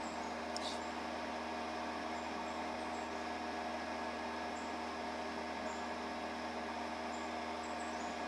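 A steady electrical hum made of several fixed tones that does not change, with a faint click about half a second in and a few faint, short, high chirps now and then.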